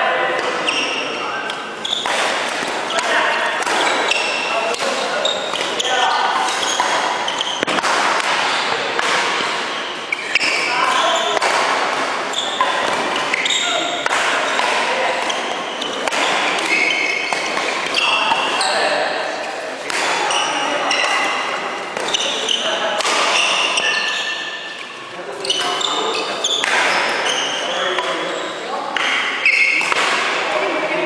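Badminton rally on a wooden indoor court: sharp racket hits on the shuttlecock and footfalls and thuds on the floor, in an echoing sports hall with voices talking throughout.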